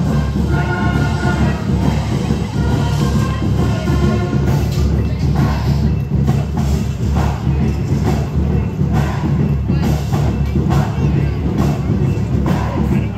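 High school marching band playing, with sustained wind chords over a steady low bass for the first few seconds. From about halfway through, sharp, frequent percussion hits come to the fore.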